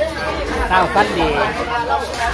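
Speech only: people talking, with several voices chattering.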